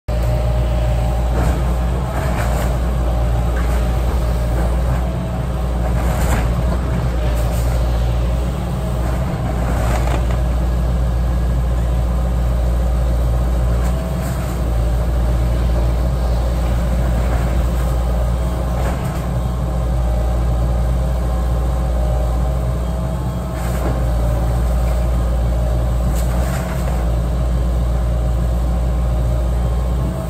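Diesel engine of a John Deere tracked excavator running steadily at work, with intermittent cracks and crunches of timber and siding breaking as the machine tears into a wooden house.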